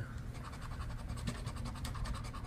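Scratch-off lottery ticket being scraped with a round hand-held scratcher, in rapid, evenly spaced strokes.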